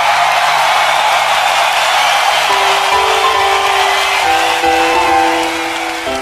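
Hammond organ played solo live: a bright wash of noise that slowly thins out, with slow held notes entering about two and a half seconds in and stepping to a new pitch every second or so.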